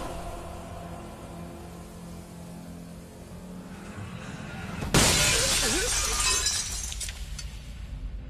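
Low, tense film drone, then about five seconds in a sudden loud crash with glass shattering, like a vehicle collision, fading over the next two seconds.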